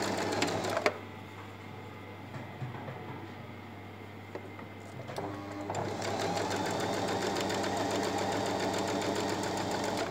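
Domestic electric sewing machine stitching a zipper in with a zipper foot. It runs in a short burst at the start, stops, then starts again about six seconds in and runs steadily with an even, rapid needle rhythm.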